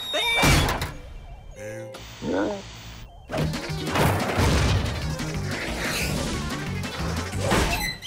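Cartoon soundtrack of music mixed with slapstick sound effects: a short vocal cry near the start, then crashes and thuds over a dense, busy stretch of music.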